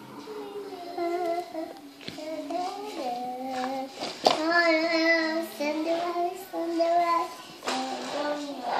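A young child singing a tune in a high voice, holding notes and sliding between them. A single sharp knock sounds about four seconds in.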